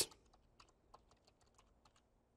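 Faint typing on a computer keyboard: a steady run of about ten keystrokes, roughly five a second, as a word is typed in capitals.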